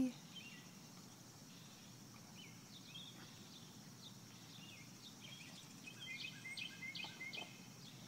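Faint outdoor ambience of small birds chirping in short, high, often falling calls, more often in the second half, over a faint steady high hiss.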